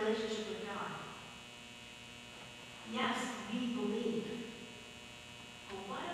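Steady electrical mains hum, with a voice speaking briefly at the start and again about three seconds in.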